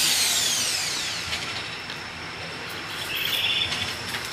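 Corded electric drill spinning down after the trigger is released, its high whine falling in pitch and fading away by about a second and a half in.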